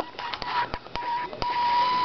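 A ZVS flyback driver setup giving a steady high-pitched whine with scattered sharp clicks while its power supply trips on a small arc.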